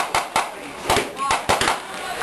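About half a dozen sharp bangs in quick, irregular succession: blank gunfire in a First World War battle re-enactment.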